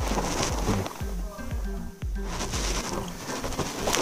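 Background music with a steady beat: short held notes stepping up and down over a pulsing bass, with one sharp click about two seconds in.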